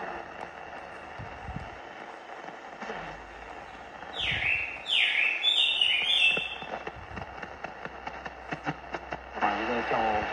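Shortwave reception on a vintage National Panasonic RF-858D portable radio being tuned: steady static hiss, with four quick falling whistles about four to six seconds in and crackles of static later.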